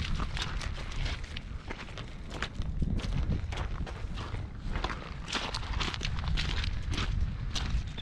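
Footsteps on loose stones and gravel, a steady run of short irregular steps over a low rumble.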